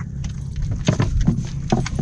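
Several short knocks and thumps against a small wooden outrigger boat as a fishing line is hauled in, a few spread over the second half, over a steady low rumble.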